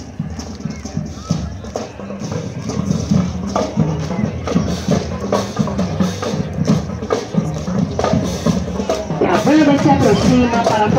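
Marching band music with light, clicking percussion in a steady rhythm, mixed with voices. It gets louder and fuller about nine seconds in.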